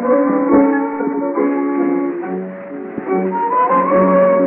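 Instrumental tango played by an early tango orchestra, heard through a 1916 acoustic recording with a thin, narrow sound that has no highs. The melody lines move in held notes, softening briefly past the middle, and a note slides upward near the end.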